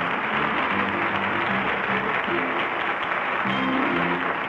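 Studio audience applauding while music plays underneath, a run of held notes that change in steps.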